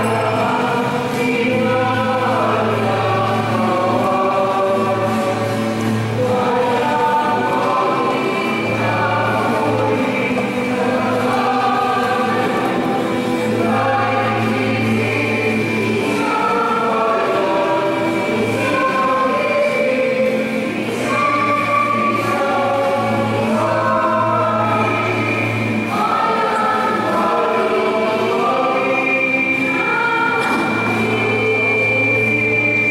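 A choir singing a hymn, with a low held note sounding underneath in long stretches.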